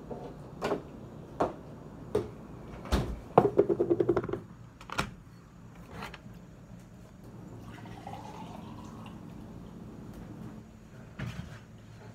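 Knocks and a short rattle from a refrigerator door and packaged meat being handled, then a glass being filled with water, its pitch rising as it fills.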